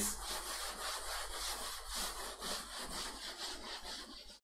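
Felt blackboard eraser rubbing across a chalkboard in repeated back-and-forth strokes, wiping off chalk.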